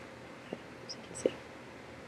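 Quiet pause in a small room: a low steady hiss with two faint short clicks, about half a second in and again just past a second.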